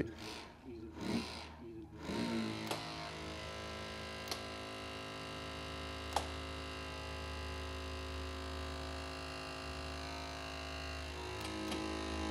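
Battery-powered electric-hydraulic rescue ram running steadily as it extends against the steering column, starting about two seconds in and stopping just before the end, with a few sharp cracks along the way.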